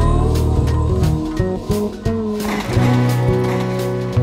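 Instrumental break of an acoustic folk-rock band's song: drums keep a steady beat under sustained bass and string parts, with a brief noisy swell near the middle.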